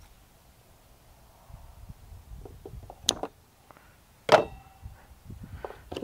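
Small handling clicks and a sharp snip of scissors cutting rubber fuel line about three seconds in, then a louder clack with a brief metallic ring as the scissors are set down on the table.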